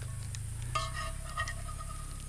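A metal utensil scraping and clinking in a cast-iron skillet as scrambled eggs are scooped out, with a few light clicks.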